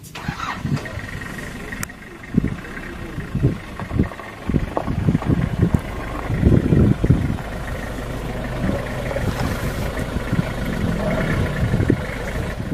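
A vehicle engine running, with irregular low rumbles and knocks over it and a steady low hum from about halfway through.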